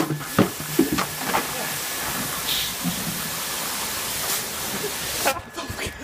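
Buckets of ice water emptied over two people and splashing onto concrete, with a few knocks in the first second and a half as the buckets are dropped, then a steady hiss that cuts off suddenly near the end.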